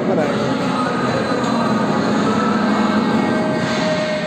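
Soundtrack of a projection light-and-sound show playing in a hall: several steady held tones over a dense rushing noise, with no words.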